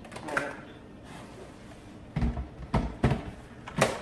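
Plastic clunks and clicks of a Ninja blender's lid being locked and its pitcher set onto the motor base: a few knocks about two seconds in and a sharp click near the end. The motor is not running.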